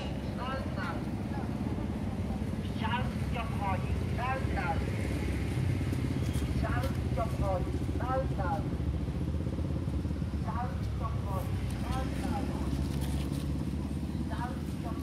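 Infant macaque squealing in short runs of three or four high, arching cries every couple of seconds while an adult macaque pins and mouths it. A steady low rumble runs underneath.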